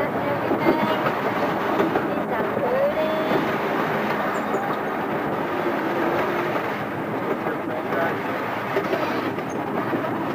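Miniature park train running, heard from aboard an open passenger car: a steady rumble and rattle of its wheels on the rails.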